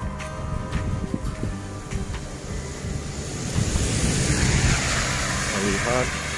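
A car passing close by on a wet road: the hiss of its tyres through the water builds from about halfway in and peaks shortly before the end, over a low rumble of wind on the microphone.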